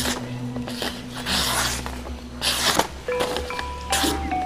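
A golok sembelih (slaughtering knife) with an old spring-steel blade slicing through a sheet of paper: three short papery hisses about a second apart, the blade cutting cleanly as a keen edge does. Steady background music plays under them.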